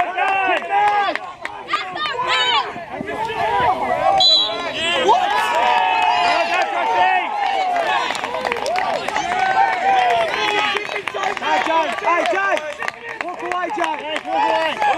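Several voices shouting and calling out over one another, with no clear words, across an open sports field.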